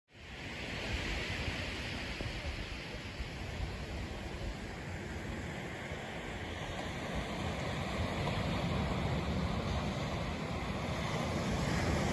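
Ocean surf washing onto a beach, with wind rumbling on the microphone: a steady rushing that fades in at the start and swells slightly later on.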